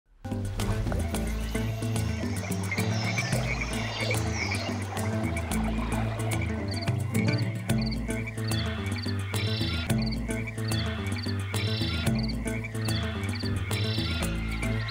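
Frog calls mixed over music with a low sustained bass line; from about halfway the calls come as short high chirps, about two a second.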